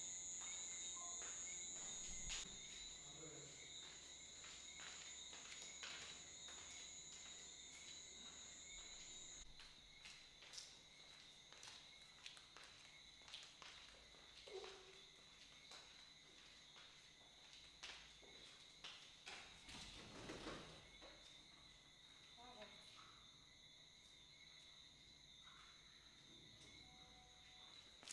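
Near-silent night room tone with the faint steady high chirring of crickets; the higher of two trilling tones stops about nine seconds in. Scattered soft taps, like footsteps on a tiled floor.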